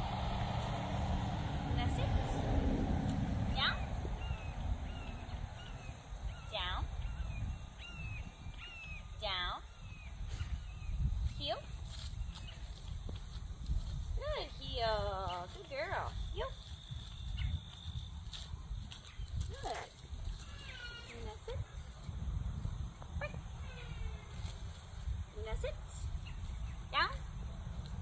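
Outdoor field ambience: a low wind rumble on the microphone, with scattered bird chirps and calls throughout. A few short spoken dog commands come near the end.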